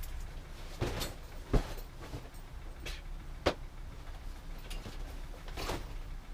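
A few sharp knocks and clunks of objects being handled and set down in a small garage, the loudest about a second and a half in, with a brief rustle near the end.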